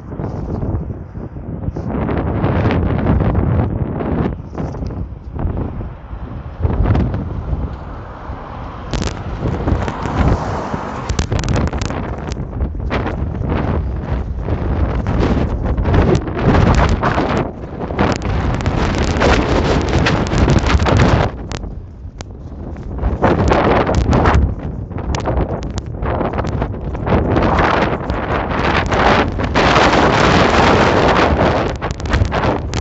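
Strong wind buffeting the camera's microphone, loud and uneven, rising and falling in gusts with a brief lull about two-thirds of the way through.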